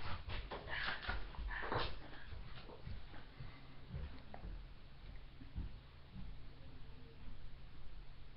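Faint gulping of a boy chugging milk from a bottle: soft, irregular swallows over a low steady hum.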